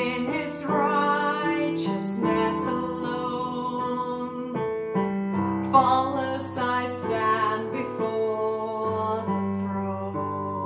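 A woman singing a slow worship song while playing chords on a digital piano, her sung notes rising over the sustained keyboard chords and pausing between phrases.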